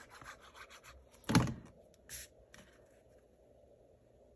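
Cardstock being handled and pressed onto a card front: faint rubbing and small ticks, a single sharp knock about a third of the way in, and a short brushing rub just past halfway.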